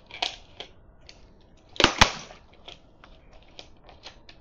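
Plastic water bottle handled and crackling: a few light clicks, then two sharp cracks close together about two seconds in.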